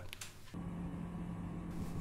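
Faint, steady low hum that starts about half a second in.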